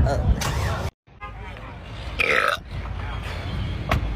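A woman burping out loud. The sound cuts out briefly about a second in.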